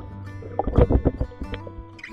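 Acoustic guitar music, with a loud rush of water noise about a second in.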